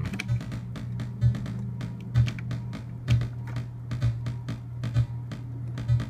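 Eurorack modular synthesizer playing a gate-sequenced pattern from the Zorlon Cannon MKII. A steady low tone carries louder low thumps about once a second, with quick clicking ticks in between.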